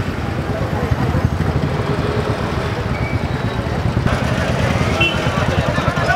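Steady low rumble of street noise, with motor vehicles running and voices in a crowd.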